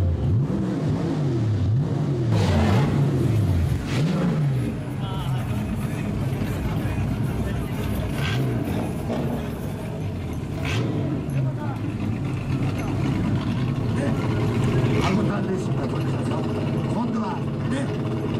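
Nissan Skyline C110 'Kenmeri' engine revved through its exhaust in several quick blips over the first few seconds, then running more steadily, with crowd chatter around it.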